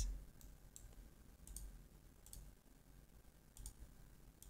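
Faint computer mouse clicks, several scattered single clicks over a quiet room background.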